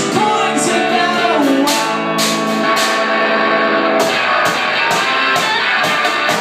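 Live band music: electric guitar played with percussion hits, the hits coming thick and regular in the second half, and a sung line early on.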